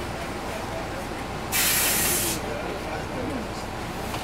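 Inside a 2002 MCI D4000 coach standing at a light, its Detroit Diesel Series 60 inline-six diesel idling as a steady low rumble. About a second and a half in, a loud hiss of compressed air from the bus's air system lasts just under a second.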